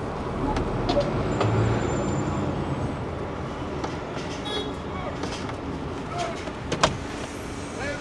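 Heavy goods lorry driving slowly in traffic, heard from inside the cab: a steady engine and road rumble with a few light clicks.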